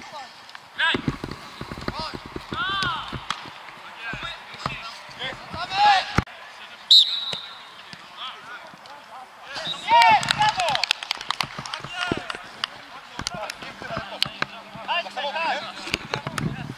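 Footballers shouting short calls to each other across an outdoor pitch, with scattered thuds of the ball being kicked on artificial turf. A brief high whistle-like tone about seven seconds in is the loudest moment.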